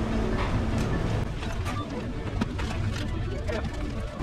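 Fast-food restaurant counter and kitchen background: a steady low hum with faint voices, a few short clicks and clatter, and brief faint beeps.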